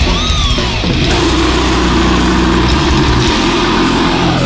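Death metal instrumental: heavily distorted electric guitars over bass and drums. A high guitar note bends up and back down near the start, then a low chord is held.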